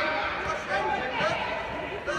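Indistinct voices of players and spectators, several at once, calling across an indoor football pitch.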